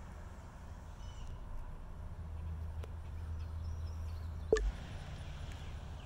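Outdoor roadside ambience: a low rumble that swells over a few seconds, with a few faint high chirps and one brief sharp sound about four and a half seconds in.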